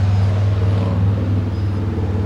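An engine running steadily with a low, even hum.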